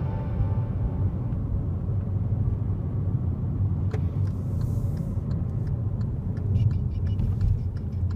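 Steady low rumble of a car's engine and road noise heard inside the cabin while driving. From about five seconds in, a regular light ticking joins it: the turn-signal indicator.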